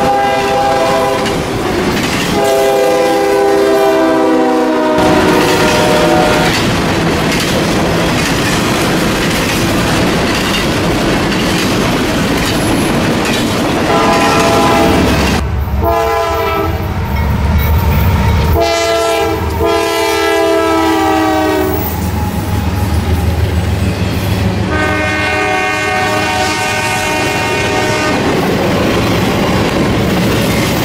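Freight trains passing: the steady rumble and wheel clatter of double-stack container cars, broken by several blasts of a diesel locomotive's multi-chime horn, each a second and a half to three seconds long. A heavy low rumble builds in the middle.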